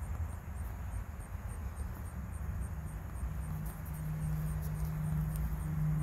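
An insect chirping at a high pitch, about three to four evenly spaced chirps a second, over a low rumble. A low steady hum comes in about three seconds in.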